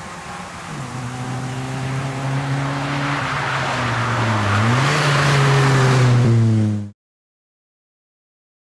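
Opel Corsa rally car's engine pulling hard as the car approaches, growing steadily louder. Its revs dip briefly and climb again about four and a half seconds in. The sound cuts off suddenly about seven seconds in.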